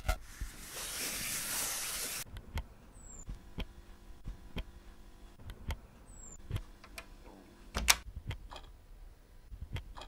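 A short recording auditioned through an iPad's speaker as a hiss-like rush for about two seconds, cutting off suddenly, then scattered light taps and clicks of a fingertip on the touchscreen, with a louder click near the end.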